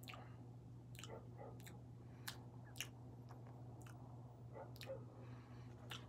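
Lip smacks and small wet mouth clicks of a cigar smoker puffing and tasting the smoke, about ten spread unevenly, over a steady low hum.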